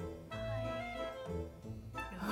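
Background music: held notes over a pulsing bass line.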